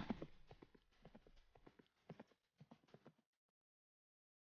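Faint clip-clop of a horse's hooves, dying away about three seconds in.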